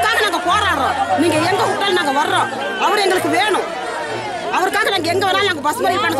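Speech only: a woman speaking in Tamil, continuously and without pause.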